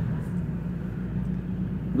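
A steady low mechanical hum, with no distinct events.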